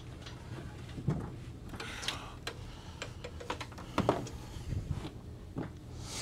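A Bambu Lab P1P 3D printer being set down and slid into place on a wooden shelf of a metal shelving rack: scattered knocks and scrapes, the sharpest about a second in and again about four seconds in, over a steady low hum.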